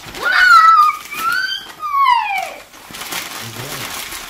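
A young girl's excited high-pitched squeals on unwrapping a present: three quick cries, the last sliding down in pitch.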